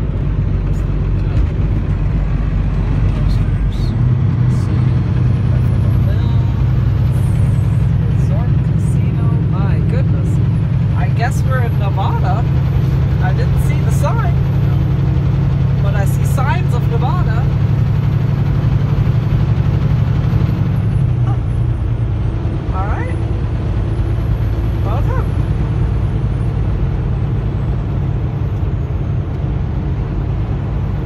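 Semi truck's diesel engine droning inside the cab at highway speed, with steady tyre and road noise. The engine note grows louder about four seconds in and eases back around twenty-one seconds.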